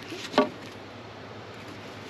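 A wooden hockey stick being handled, with one short knock about half a second in, over a faint background.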